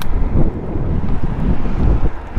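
Wind buffeting the microphone of a camera riding on a moving bicycle, a loud, steady low rumble.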